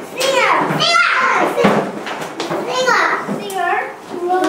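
Young children's high-pitched voices talking and calling out in a classroom, with no words made out clearly.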